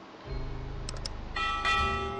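Subscribe-button sound effect: two faint mouse clicks about a second in, then a bell chime ringing on, over quiet background music.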